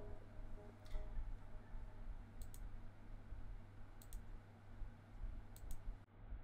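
Computer mouse clicking: four short, sharp clicks or click pairs a second or two apart, over a faint low hum.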